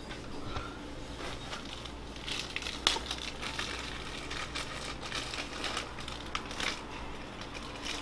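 Rustling and scattered light clicks of small metal rhinestone rim-set parts being handled, with one sharper click about three seconds in.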